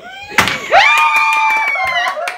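Wooden Jenga tower collapsing onto the table, a brief clatter of blocks about half a second in, followed at once by a loud, high-pitched scream held for about a second.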